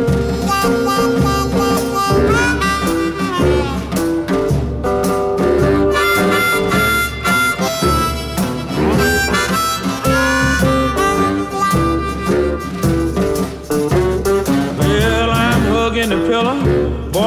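Electric blues harmonica solo with bent, sliding notes over a steady band backing of guitar, bass and drums.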